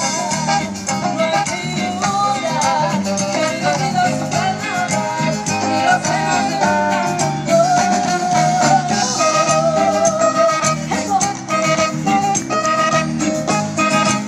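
A live Latin band playing an upbeat dance number through an outdoor PA, with percussion and melody lines going without a break.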